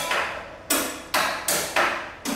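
Electric guitar laid flat on the lap, its strings struck with a handheld object: about five sharp metallic hits in quick, uneven succession, each ringing briefly and dying away.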